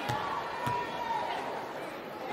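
Basketball arena crowd noise from a game broadcast, with two short knocks in the first second from the ball bouncing on the hardwood court.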